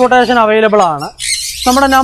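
A man talking, with a harsh, noisy squawk from a caged parrot about a second in, filling a short break in his speech.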